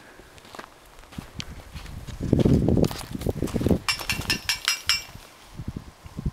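Footsteps crunching on sandy, gravelly ground, heaviest about two to four seconds in, followed by a run of light metallic clinks about a second long.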